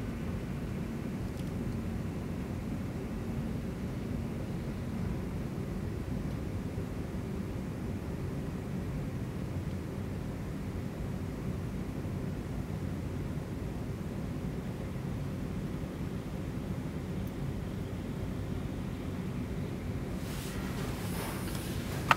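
Steady low background rumble with a faint hum and no distinct events, with a brief rustle near the end.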